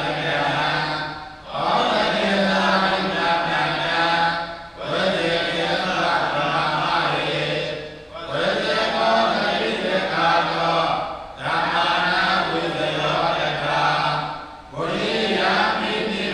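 Buddhist monks chanting Pali paritta in unison on a steady low pitch, in phrases of about three seconds with short breath pauses between them.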